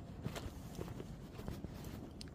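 Footsteps of someone walking, a series of irregular soft steps over low background noise.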